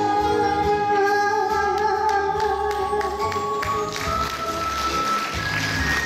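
Enka sung by a woman over a karaoke backing track: she holds one long note with vibrato, which ends about halfway through, and the instrumental backing plays on.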